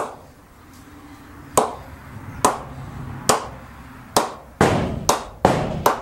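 A leather cricket ball bounced off the face of an Aldred Titan cricket bat: eight sharp knocks, the first few about a second apart, then quicker, about two a second, over the last couple of seconds.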